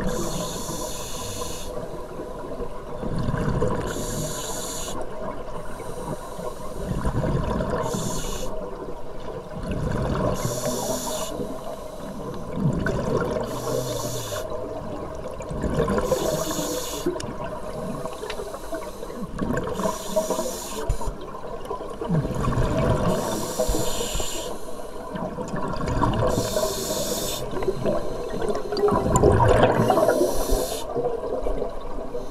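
Scuba diver breathing through a demand regulator underwater: a hiss of air on each inhale, alternating with a rumbling gurgle of exhaled bubbles, in a slow cycle of about one breath every three to four seconds.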